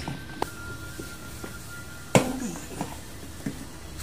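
Plastic inner back panel of a refrigerator's freezer compartment being pried loose by hand: a few light clicks, then one loud sharp snap about two seconds in as its clips let go.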